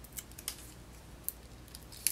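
Faint, scattered small clicks and ticks of fingers and fingernails handling a rolled paper flower centre with a foam adhesive dimensional on its base.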